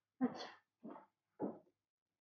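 Three short sobbing sounds from a woman, each fainter than the last.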